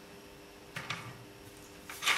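Two faint clicks as the marker on a homemade square-tube measuring rod is shifted and set upright, over a steady low hum.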